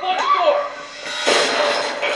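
Horror-film soundtrack playing: a short voice with a gliding pitch, then a burst of rushing noise from just over a second in.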